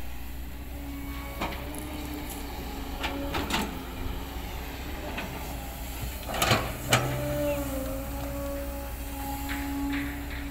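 Kobelco hydraulic excavator working a dirt pile: a steady diesel engine drone with a hydraulic whine, and scattered knocks and scrapes of the bucket digging into soil and rock. The loudest knocks come twice, about six and a half and seven seconds in.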